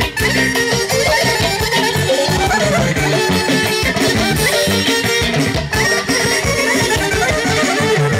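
Live wedding band playing fast traditional dance music, with a saxophone lead over a steady beat.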